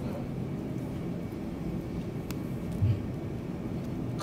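A low, steady rumble of background room noise with no speech, broken by a faint click a little past two seconds and a single soft low thump near three seconds.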